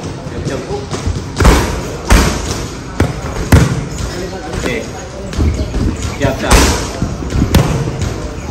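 Boxing gloves smacking focus mitts during pad work: about half a dozen sharp, loud slaps in quick combinations, irregularly spaced.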